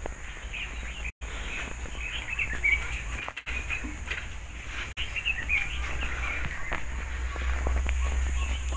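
Small birds chirping in many short, scattered calls over a steady low rumble, with two brief dropouts.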